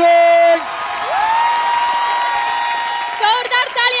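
Applause and crowd noise under one long, high held vocal whoop that glides up and holds for about two seconds. Near the end it gives way to an excited shouted announcement.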